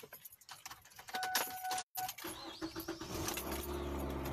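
Car keys jangling and a steady electronic beep inside a car, then the engine starts about two seconds in and settles into a steady low idle, heard from inside the cabin.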